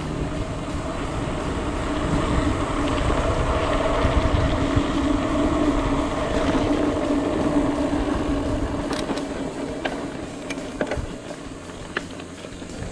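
Mountain bike rolling down a paved road: wind rushing on the helmet-camera microphone and a steady hum from the tyres. The sound eases off near the end, with a few sharp clicks and rattles.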